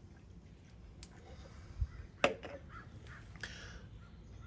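A man taking a quick sip from a drink: faint handling and drinking sounds, with a soft thump and then a sharp click about two seconds in.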